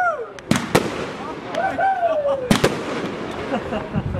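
Aerial fireworks bursting with sharp bangs: two in quick succession about half a second in, and two more about two and a half seconds in.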